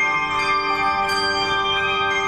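A handbell choir playing: several bells struck together, with a fresh set of notes about a second in, their tones ringing on and overlapping.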